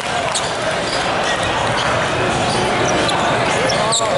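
Busy multi-court indoor volleyball hall: voices of players and spectators with volleyballs thudding on the floor, and a couple of short high sneaker squeaks on the sport court.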